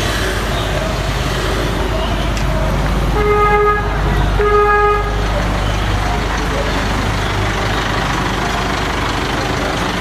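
Busy street traffic with engines running close by, and a vehicle horn giving two short toots about a second apart a few seconds in.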